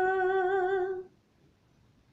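A woman's voice holding a long sung note with a wavering vibrato, ending about a second in. Near silence follows.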